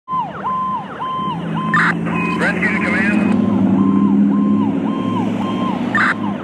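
A fire rescue truck's electronic siren yelping, rising, holding and falling about twice a second, with a long low blast of its horn through most of the middle.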